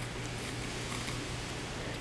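Faint, even scratching of a pencil drawn along the edge of a wooden workpiece, over a steady low hum.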